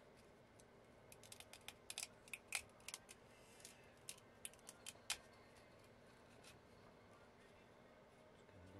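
Light clicks and taps from woofer parts being handled and fitted: a new spider pressed into a speaker basket and a paper cone set in place for a dry run. The clicks come in an irregular scatter over about four seconds, the sharpest two near the middle and about five seconds in, and then they stop.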